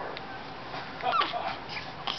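Young baby's short high-pitched vocal sound, falling in pitch, about a second in.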